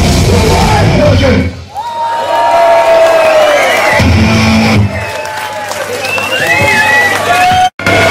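A live punk rock band ends a song, the full-band sound stopping about a second and a half in. The crowd then cheers, shouts and whoops between songs, with a short low bass note about halfway through, and the band starts playing again at the very end.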